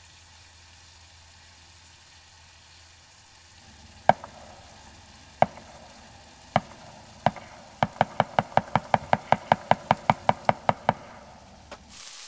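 A cooking utensil knocking against a frying pan of bulgogi: a few separate knocks, then a quick, even run of about six knocks a second for around three seconds.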